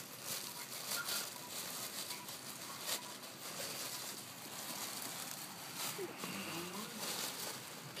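Wrapping paper on a present rustling, crinkling and tearing as it is worked open, with many small crackles throughout.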